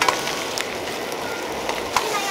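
Chopped duck sizzling steadily as it is stir-fried in a wok, with a few sharp knocks of the metal ladle against the pan.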